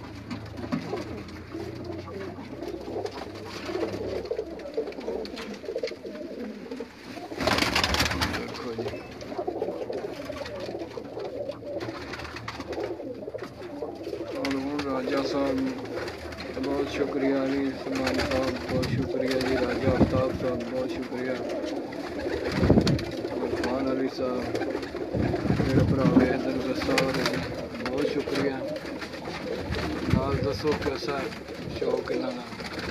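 Many domestic pigeons cooing together in a small loft, the calls overlapping throughout. A burst of noise about eight seconds in and a few sharp knocks later stand out above the cooing.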